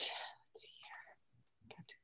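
A woman's voice, mostly quiet and breathy. A word trails off at the start, a few faint whispered mouth sounds follow, and she says "good" softly near the end.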